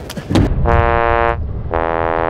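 Electronic buzzer sound effect sounding twice, two long flat tones a short gap apart, the kind of 'wrong' buzzer that marks a failed attempt, here a backflip where a hand touched down.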